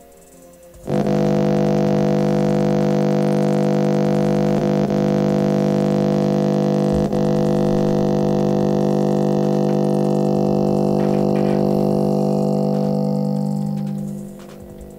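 A loud, steady droning tone made of several held pitches starts suddenly about a second in and fades out near the end: an unexplained vibrating sound cutting into the call audio.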